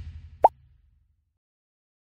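Outro logo sound effect: a low rumble fading out over the first second, with a short rising pop about half a second in, the loudest moment.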